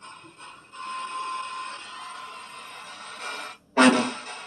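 Ghost-hunting spirit box scanning through radio frequencies. It gives choppy bursts of static at first, then a steady hiss with a faint tone. Near the end it cuts out briefly, then there is a sudden loud burst.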